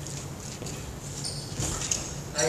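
Badminton players' shoes moving on a wooden court during a rally: light footsteps and short squeaks, busiest near the end.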